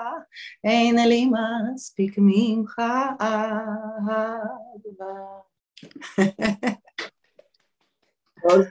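A woman singing unaccompanied, holding long notes with vibrato, her phrase ending about five seconds in. A quick run of short, sharp sounds follows.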